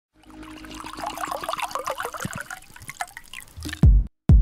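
Liquid trickling and splashing as a cocktail is poured from a metal shaker into a row of shot glasses. The pour fades out after about two and a half seconds. A loud, deep, falling boom comes right at the end.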